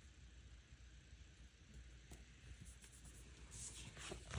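Near silence with faint paper-handling sounds: stickers being pressed down on a planner page, a few soft clicks, and a brief paper rustle near the end as the sheets are shifted.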